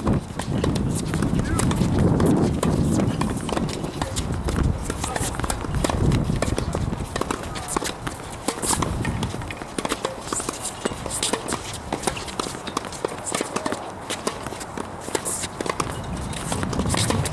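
Sharp, irregular knocks of tennis balls bouncing and shoes on an outdoor hard tennis court, with indistinct voices. The voices are loudest in the first few seconds.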